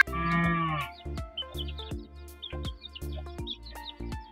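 A cow mooing once, under a second, then background music with a steady beat and plucked notes.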